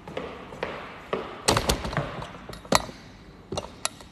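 Jump rope and footsteps on a hard floor: a few separate sharp slaps and knocks, the two loudest about one and a half seconds in and just under three seconds in. The skipping attempt breaks off after only a few turns.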